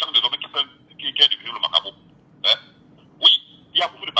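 Speech only: a voice over a telephone line, in short bursts with pauses between them.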